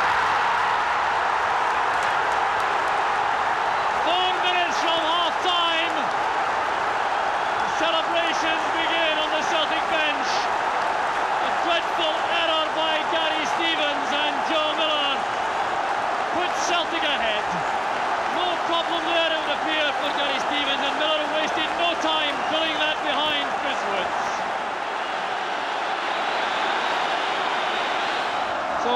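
Large football stadium crowd cheering and singing after a goal, with bursts of high warbling whistles sounding on and off throughout.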